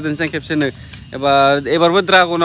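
A man talking, with one long drawn-out vowel held steady about a second in: speech only.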